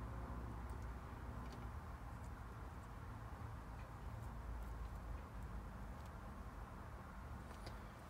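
Faint clicks and rustling of RCA signal cables being handled and plugged into a car amplifier's inputs, over a steady low hum.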